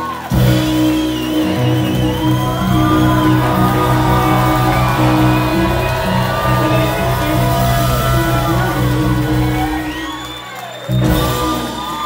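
Live soul band playing an instrumental stretch with horns, organ, guitar and drums, with shouts and whoops from the audience. The music drops down briefly about ten seconds in, then swells back up.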